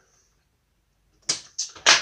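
Near silence, then three sharp clicks a little over a second in, the last the loudest: a toggle switch being flipped and hands on the plastic light test board as the power is switched off.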